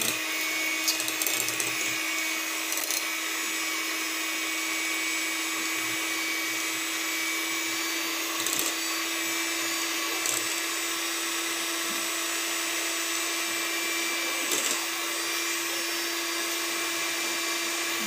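Electric hand mixer running steadily with its beaters in a bowl of creamy mixture, a constant motor whine, with a few brief clicks along the way.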